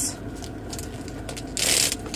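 A purse's gold metal chain strap being pulled through its fittings to change it from a short to a long handle: light clicking and rubbing of the chain links, with a brief louder rasp near the end.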